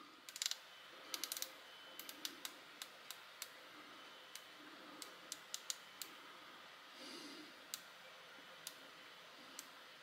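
Faint clicks of the Yaesu FT-70D handheld radio's detented top dial being turned step by step to scroll through characters: a quick run of clicks about a second in, then single clicks spaced out.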